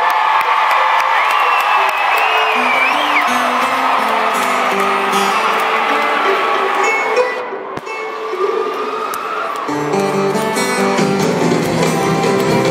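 A live country concert recorded from the crowd. Fans cheer and whistle while a guitar picks a melody of single notes from a few seconds in. Near the end the sound grows fuller as the rest of the band comes in.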